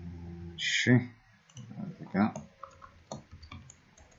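Computer keyboard keystrokes and mouse clicks as a folder name is typed, with a few separate sharp clicks in the second half.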